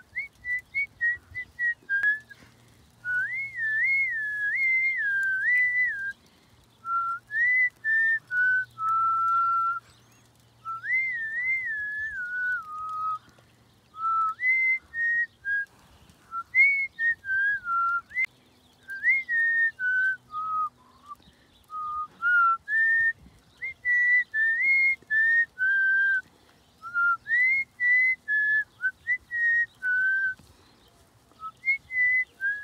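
A person whistling a tune: a single clear whistled melody with sliding notes, in short phrases separated by brief pauses.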